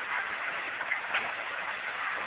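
Steady background hiss of an old speech recording, with no voice, and a faint click about a second in.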